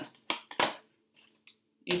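Tarot cards being handled against the deck and the tabletop: a few short, sharp snaps and slides, the strongest about half a second in, before a spoken word near the end.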